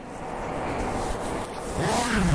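Full-length front zipper of a Rapha Pro Team Crit cycling jersey being drawn up slowly, one long continuous zip lasting almost two seconds.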